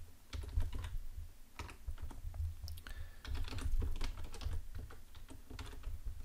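Typing on a computer keyboard, a run of irregular key clicks as a password is entered.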